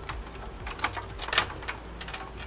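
A few light clicks and knocks from cables and parts being handled inside a desktop computer's metal case, over a steady low hum.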